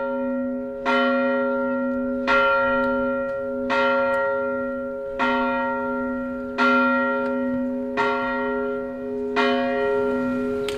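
A single church bell tolling steadily, struck about every second and a half, each stroke ringing on into the next.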